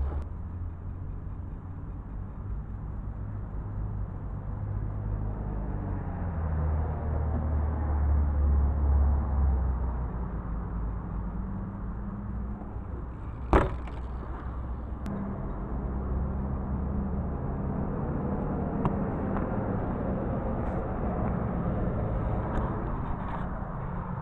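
A motor vehicle's engine rumbles steadily, swelling to its loudest about a third of the way in and then easing back. A single sharp knock comes a little past halfway.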